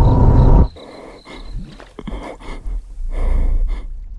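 Horror trailer sound design: a loud, deep rumbling drone that cuts off suddenly under a second in. It is followed by much quieter airy swells and small clicks, with one louder swell near the end.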